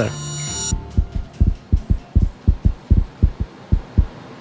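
A rapid heartbeat, low double thumps about three times a second, heard after a held musical note fades out.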